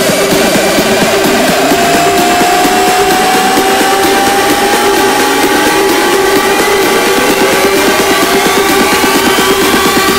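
Electronic dance music played loud over a club system: a held synth note and a steady lower tone over fast, even pulsing, with a rising synth sweep that climbs from about four seconds in, the kind of riser that builds toward a drop.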